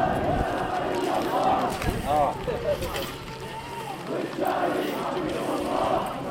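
A crowd of marchers shouting together, many raised voices overlapping.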